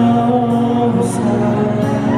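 Live band music from the audience, with sustained, held notes: electric and acoustic guitars over a cajon beat, played through a concert PA.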